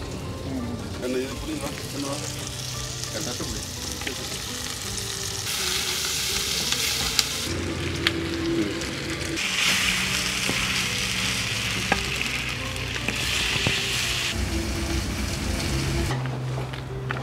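Pieces of meat frying with shallots and curry leaves in a black clay pot over a wood fire, stirred with a wooden spoon, with a steady sizzle. The sizzle swells loud twice: for about two seconds near the middle, then for several seconds in the later part.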